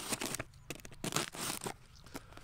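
A knife cutting a Y-shaped slit through corrugated cardboard, in a few short scratchy strokes with brief pauses between them.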